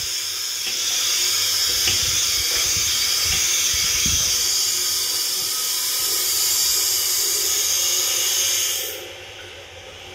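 Water running from a tap into a stainless steel hand basin, a steady hiss that cuts off about nine seconds in.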